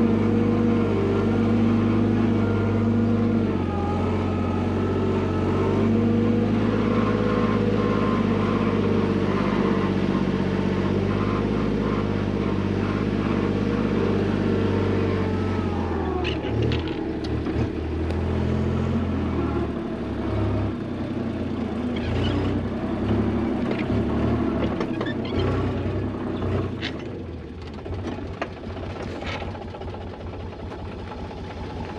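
Site dumper's diesel engine running steadily with a strong even note. About halfway through the note drops and the engine runs unevenly, with scattered knocks and rattles.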